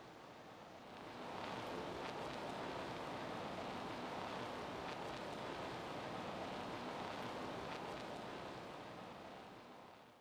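Steady hiss-like noise with no tone in it, fading in about a second in and tapering off near the end, with a few faint ticks.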